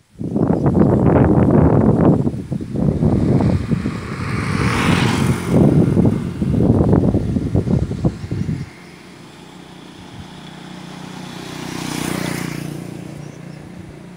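Wind buffeting the microphone in loud, ragged gusts for the first eight or nine seconds, then a much quieter steady outdoor hiss. A road vehicle passes by with a smooth rise and fade about twelve seconds in.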